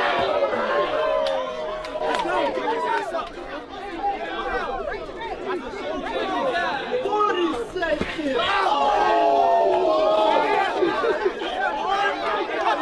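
Crowd of boxing spectators, many voices shouting and talking over one another, swelling louder about three quarters of the way through.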